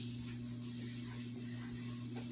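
Quiet kitchen room tone with a steady low electrical hum and no distinct event.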